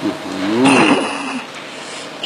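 A person's voice: one drawn-out vocal sound whose pitch rises and then falls, with a breathy rush in the middle, fading out after about a second and a half.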